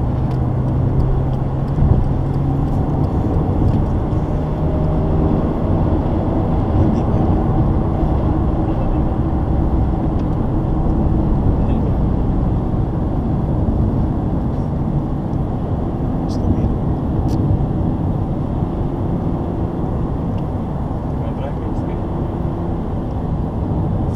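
Interior noise of a Dodge Challenger SXT cruising on a highway: its 3.6-litre V6 running steadily under the hum of tyres and road noise, heard inside the cabin.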